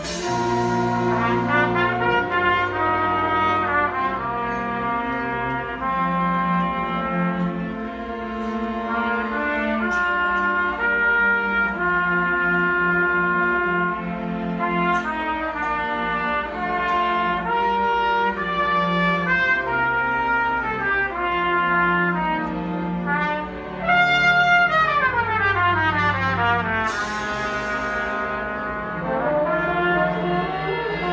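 A small orchestra of strings, brass and drum kit playing live, with the brass to the fore. Near the end a falling run of notes leads into a cymbal crash.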